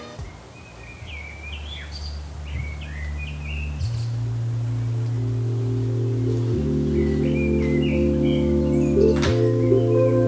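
Birds chirping in short rising and falling calls, over soft sustained music chords that fade in and grow louder, changing about every three seconds.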